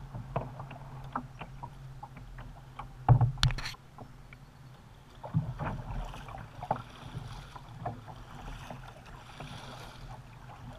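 Kayak paddling: paddle blades dipping and splashing, with knocks of the paddle shaft against the plastic hull over a steady low hum. The loudest knocks come about three seconds in.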